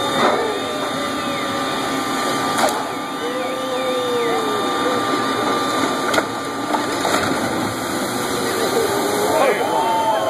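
A ship side-launching down the launch ways: a steady rushing noise with a few sharp knocks as the hull slides, under distant voices of onlookers. Near the end the hull hits the water and the sound swells into a splash.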